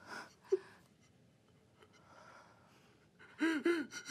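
A man sobbing: a gasping inhale, a short whimper about half a second in, then two broken, rising-and-falling sobbing cries near the end.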